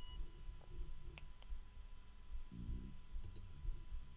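A few sharp computer mouse clicks: two close together about a second in, another a little earlier and one more near the end. A brief low murmur of a voice comes between them.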